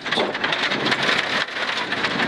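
Rally car driven flat out on a gravel stage, heard from inside the car: a steady hiss and patter of tyres on loose gravel and stones flung against the underbody.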